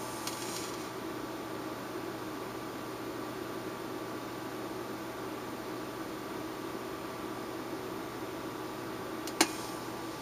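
Steady low hum and hiss of room tone, with a faint brief rustle near the start and a single sharp click near the end.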